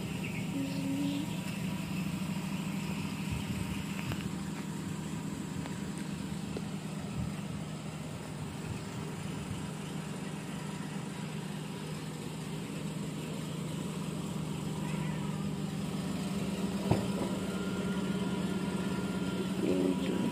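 Perodua Axia hatchback's engine idling with a steady low hum.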